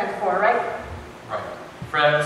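Stage actors' voices in short, loud vocal outbursts, each a fraction of a second long, with gaps between them.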